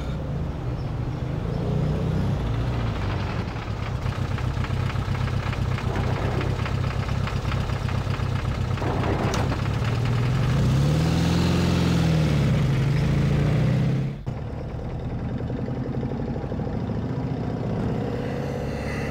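Steady low hum of a running engine, with a brief rising-then-falling tone about eleven seconds in and a sudden drop in level about fourteen seconds in.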